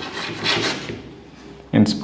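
Chalk rasping across a blackboard in quick writing strokes for about the first second, then a short, loud knock near the end.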